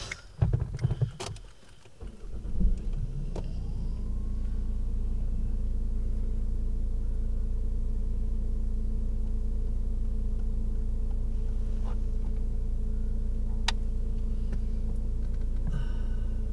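A car's engine and cabin noise heard from inside the car: a few clicks and knocks at first, then from about three seconds in a steady low hum with a brief rising whine as it settles.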